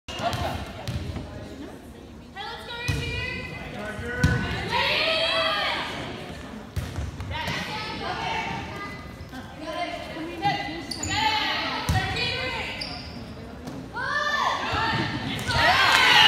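Volleyball rally in a gym with an echoing hall sound: a handful of sharp smacks as the ball is served, passed and hit, with players and spectators calling out and shouting between contacts. The crowd noise swells into cheering near the end as the point is won.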